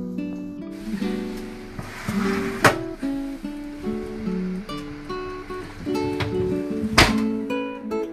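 Background acoustic guitar music, plucked and strummed, with two sharp knocks, one about a third of the way in and one near the end.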